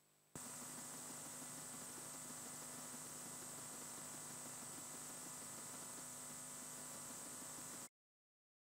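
Steady electronic hiss with a low hum and a thin high whine from an open audio line carrying no programme. It switches on suddenly just after the start and cuts off abruptly near the end into dead silence.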